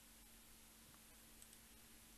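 Near silence: room tone with a faint steady low hum and a faint click or two about midway.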